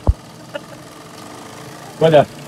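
A steady low machine hum, with a short dull thump right at the start and a faint click about half a second in.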